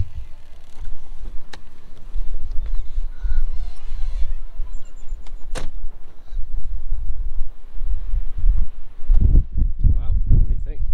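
Strong gusty wind buffeting the microphone, a deep rumble that rises and falls with each gust, up to about 40 mph. A couple of sharp clicks, one near the start and one a little past halfway.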